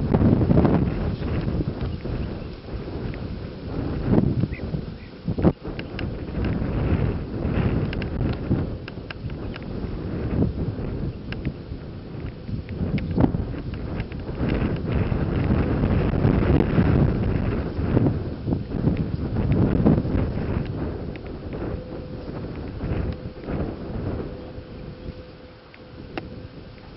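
Wind buffeting the microphone in uneven gusts, with a few short clicks scattered through it.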